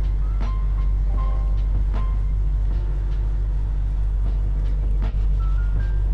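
Instrumental background music with a strong, steady deep bass and a few faint soft melody notes above it.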